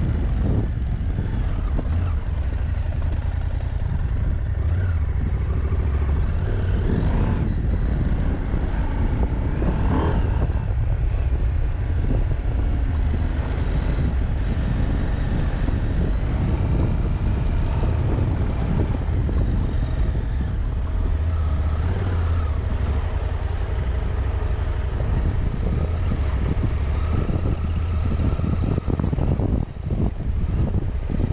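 Husqvarna Norden 901 parallel-twin engine running as the bike is ridden off-road, its pitch rising and falling with the throttle, over a steady low rumble of wind on the helmet microphone.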